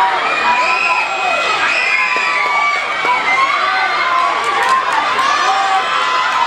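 A crowd of schoolchildren in the stands shouting and cheering on runners during a relay race. Many high voices overlap in steady, sustained yells.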